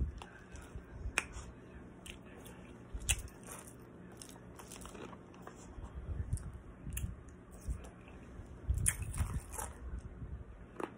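Ice being crunched and chewed in a person's mouth, close to the microphone: irregular sharp crunches, with louder bites about a second in, about three seconds in, and near the end.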